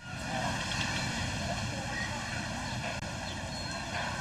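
Outdoor ambience from a beach news report: a steady rushing din with faint distant voices in it, cutting in abruptly at the start.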